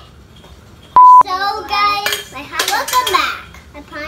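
A short, loud electronic beep at one steady pitch about a second in, then a young child talking.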